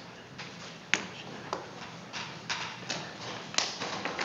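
Scattered light taps and knocks, with faint shuffling, in a wood-floored room: about five short, sharp clicks at irregular intervals, the sharpest about a second in.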